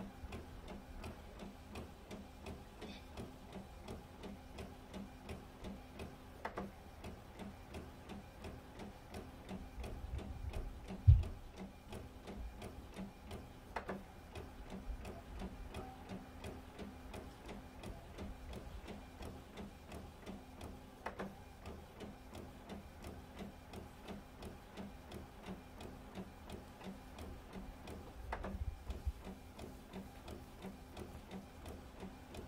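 Epson WorkForce WF-7720 inkjet printer printing, its print head shuttling in a steady, fast ticking rhythm. A sharper click comes about every seven seconds, and there is a single loud thud about eleven seconds in.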